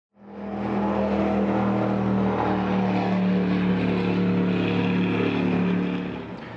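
An engine running steadily at an even, unchanging pitch, fading in just after the start.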